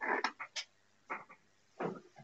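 A dog making four short, faint sounds spaced about half a second apart.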